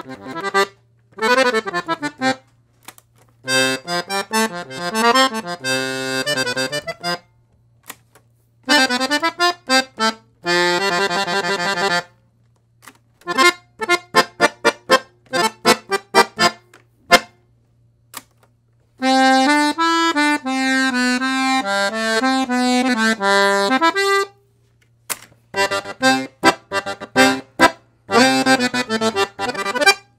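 Italian Domino piano accordion with four sets of treble reeds (LMMH) being played in several short phrases of chords and melody, separated by brief pauses. The tone colour changes from phrase to phrase as different treble registers are tried out.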